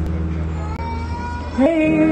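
A Yamaha electric keyboard holds a sustained chord. About one and a half seconds in, a woman starts singing through a microphone, sliding up into a long held note.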